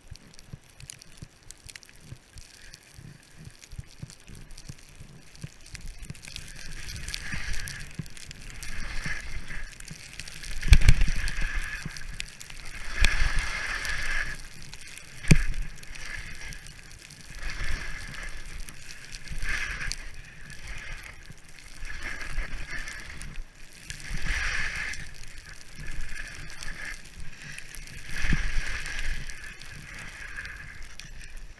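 Skis hissing and scraping on snow through a run of turns, surging about every one and a half to two seconds and growing louder from about six seconds in. Wind buffets the helmet-mounted microphone, with a couple of sharp low thumps near the middle.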